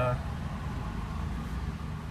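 Steady low road and cabin rumble inside a Coda electric car being driven.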